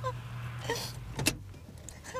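Car engine running with a steady low hum, with short squeaks, a brief hiss a little under a second in and a sharp knock just after a second in.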